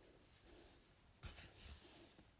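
Thick crochet thread drawn through the wrapping of a thread-wrapped bead button, giving a faint, brief rustle a little over a second in, against near silence.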